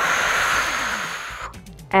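A woman's long, audible exhale through the mouth, a breathy rush of about a second and a half, breathed out on the effort of curling up in a Pilates ab curl.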